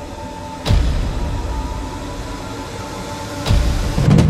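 Dark cinematic trailer score: a low rumbling drone with a few held tones, struck by two deep hits, one under a second in and one near the end.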